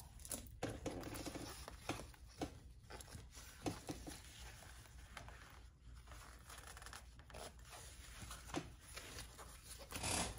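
Faint rustling and crinkling of stiff waterproof canvas pieces being flipped and lined up by hand at a sewing machine, with scattered soft clicks and taps.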